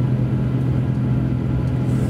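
JR Hokkaido KiHa 283 series tilting diesel railcar heard from inside the passenger car while running at speed: a steady diesel engine hum at constant revs over an even running rumble.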